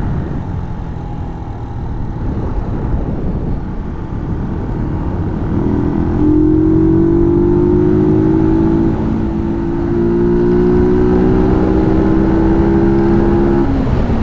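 Brixton Rayburn motorcycle engine heard from on board while riding. The note is indistinct at first, then from about five seconds in it rises steadily as the bike accelerates, dips about ten seconds in at what sounds like a gear change, and climbs again.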